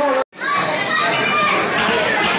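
Chatter of many children's voices overlapping in a room. It starts after an abrupt cut about a quarter second in, which ends a held, wavering tone.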